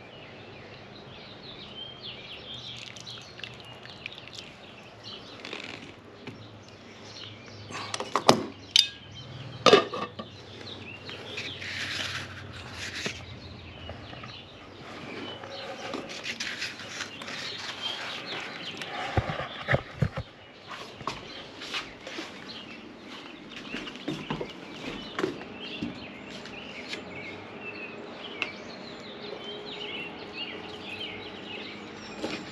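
Birds chirping and calling in the background outdoors, with two sharp clacks about eight and ten seconds in.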